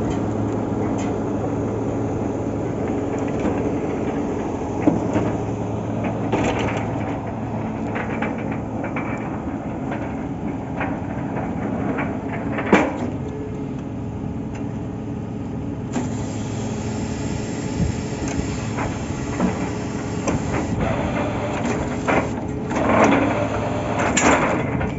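Truck-mounted borewell drilling rig running steadily, its engine note constant, with scattered metallic knocks from drill rods being handled; one sharp knock stands out about 13 seconds in, and the noise swells just before the end.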